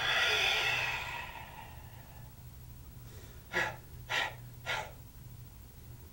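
A karateka's forceful, hissing exhale through the open mouth lasting about a second and a half as he closes a kata, followed by three short, sharp breaths about half a second apart.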